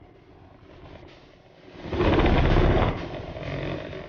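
Small moped engine revved hard for about a second, about two seconds in, then dropping back and fading.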